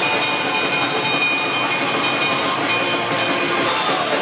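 A live band playing loud heavy music: distorted electric guitar and bass over drums with repeated cymbal hits, and a high steady tone held through most of it.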